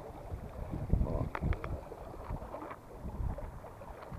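Wind rushing over the microphone and water washing along the hull of a small sailboat under sail, with a few short sharp clicks about a second and a half in.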